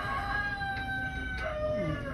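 A rooster crowing: one long held call that steps down to a lower pitch near the end.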